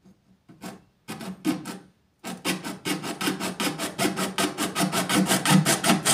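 A flat metal blade scraped back and forth against a plastic bottle. A few separate strokes come in the first second; after a brief pause, quick, even strokes follow at about four or five a second and grow louder.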